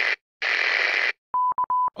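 Intro logo sound effect: a burst of steady hiss, then after a short gap a second burst lasting under a second. Three short beeps at one pitch follow near the end.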